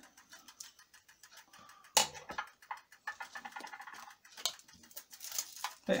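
Small handling sounds as a card guide and a sheet of hot-press foil are lifted off faux leather: light ticks and crinkles, with one sharp click about two seconds in.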